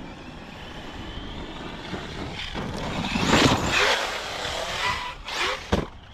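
Traxxas Sledge brushless electric RC monster truck driven hard across dirt: motor whine and tire noise grow louder as it nears, peak a little past three seconds, then fade, with a couple of brief knocks near the end.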